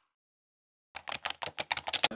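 Dead silence, then about a second in a quick run of about a dozen sharp typing clicks: an edited-in keyboard-typing sound effect for an on-screen title.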